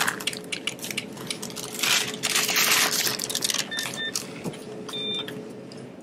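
Brown paper grocery bag rustling and crinkling as it is opened and handled at a checkout, with short electronic checkout beeps: two quick ones about four seconds in and another about a second later.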